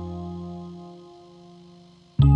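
A held chord from electric guitar and Concertmate 980 keyboard ringing out and fading away, its lowest note dying out about halfway through.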